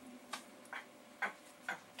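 Four short, sharp clicks at irregular spacing over two seconds.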